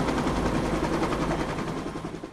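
Cartoon helicopter rotor sound effect: a rapid, even chopping that fades away near the end.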